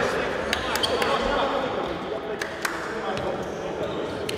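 Indistinct voices talking in a gym hall, with a few scattered sharp knocks of a basketball bouncing on the wooden court.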